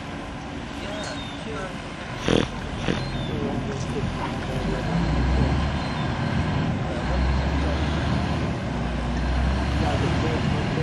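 Diesel engine of a small tug pushing a floating car-ferry pontoon: a low rumble that swells from about halfway through as the ferry gets under way. A single sharp knock comes about two seconds in.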